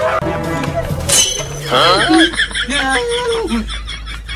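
Background music with edited-in comic sound effects. A sudden crash-like hit comes about a second in, followed by swooping tones and a short run of stepped falling tones.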